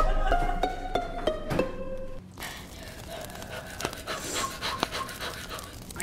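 A person panting hard from the burn of Carolina Reaper chili wings. A short burst of music plays over the first couple of seconds.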